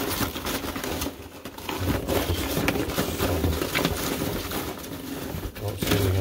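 Hands rummaging through loose die-cut cardboard packing pieces in a cardboard shipping box: continuous rustling and scraping with many small irregular clicks.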